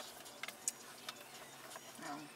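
A few light, irregular clicks over a faint background hush in a car cabin, the sharpest a little before the middle.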